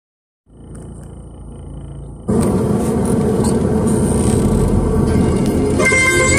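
Low rumble from inside a car driving slowly over a rough dirt road; about two seconds in a much louder, noisy sound cuts in suddenly, and near the end traditional plucked-string music begins.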